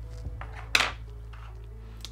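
A hard object such as a paintbrush being handled at the painting table: one sharp clink about three-quarters of a second in, with a couple of lighter clicks either side, over a steady low hum.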